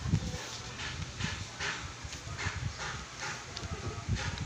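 Wooden pencil scratching on notebook paper in short strokes, about two a second, with dull low thuds underneath.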